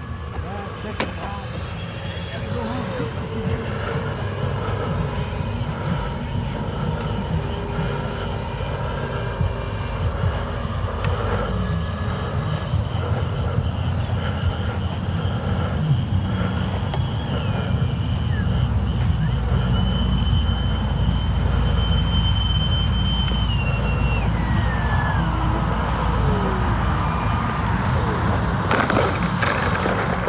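Twin 70 mm electric ducted fans of an RC A-10 jet whining in flight, their pitch stepping up and down with the throttle. The pitch glides down over a few seconds near the end as the jet comes in to land. A low wind rumble on the microphone runs underneath.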